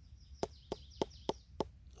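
A finger tapping five times on a firm porcini mushroom, about three short knocks a second. The mushroom is being sounded out to judge how solid it is.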